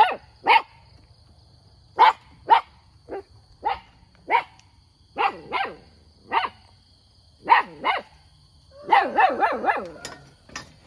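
A dog barking: short single barks, each dropping in pitch, every half second to a second, then a quick run of barks near the end.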